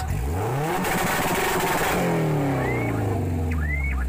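Four-cylinder car engine with a red valve cover, revved with the hood open: the pitch climbs steeply from idle, holds high for about a second, then falls slowly back toward idle.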